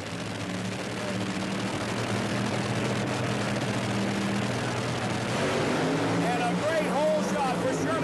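Two supercharged nitromethane Top Fuel dragsters running on the starting line and then launching down the strip. Their steady engine drone grows louder about five and a half seconds in.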